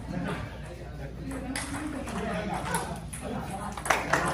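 Table tennis ball clicking off paddles and the table, with a sharp click a little over a second in and another just before the end as a rally gets going, over people talking in the background.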